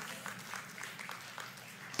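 Faint scattered clapping from a church congregation, a light patter of claps over a low room hush.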